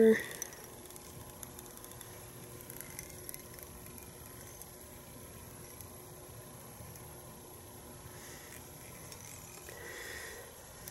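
Quiet room tone with a faint steady hum and a few soft handling noises from fingers turning a small tied fly close to the microphone.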